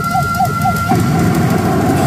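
Pachinko machine electronic sound effects: a repeated warbling tone about three times a second over a steady higher tone that fades out about a second in, with dense parlour din underneath.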